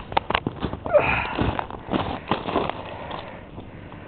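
Footsteps crunching on ice-crusted snow in an irregular walking rhythm, with a longer, louder noise about a second in.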